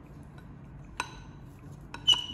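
A single light clink about a second in, with a brief ring: the plastic pH meter pen knocking against the glass beaker it is dipped in. A fainter tap follows near the end.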